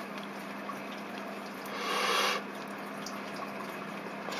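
Steady low background hiss with a faint hum, and a soft rushing hiss that swells for under a second about two seconds in.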